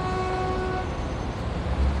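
Steady low rumble of street traffic. Over it, a held horn-like tone starts at once and fades out within the first second and a half.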